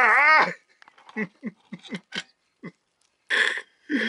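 A man's drawn-out exclamation trails off, followed by a string of about seven short, clipped vocal sounds that fall in pitch, like chuckles or grunts of amazement. A short breathy, hissing burst follows near the end.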